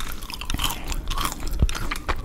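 Close-miked ASMR eating: a woman biting and chewing McDonald's food right at a condenser microphone, a dense run of small wet crunches and mouth clicks.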